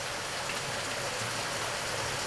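Steady outdoor water noise: an even hiss of wet weather and water with no distinct drops or other events.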